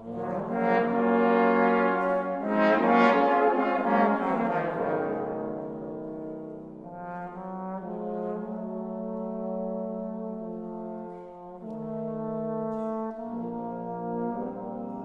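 Trombone quartet playing held chords: a loud, full entry at the start that eases after about five seconds into softer sustained chords, with a brief dip about eleven seconds in.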